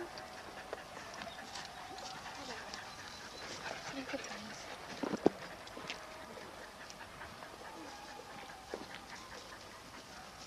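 Siberian huskies whining and yipping while out on their leads, with faint voices in the background. A sharp click comes about five seconds in.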